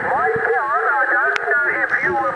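A distant station's voice received on the 11-metre band and played through a Kenwood TS-50 transceiver: a thin, narrow-band voice over steady radio hiss, with one brief click partway through.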